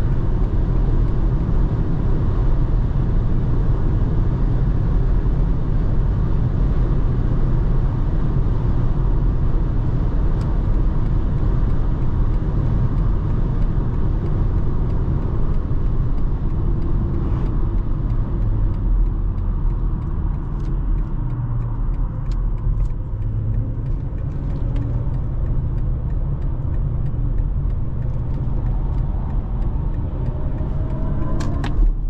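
In-cabin tyre and wind noise of a 2023 BMW iX1 electric SUV at high motorway speed: a steady rush over a deep rumble, with no engine note from its electric drive. About two-thirds of the way through it becomes quieter and duller as the speed drops, with a few faint clicks.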